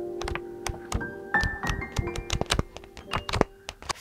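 Soft background music with held notes, over a run of quick, irregular paper clicks and flicks from sketchbook pages being riffled under a thumb.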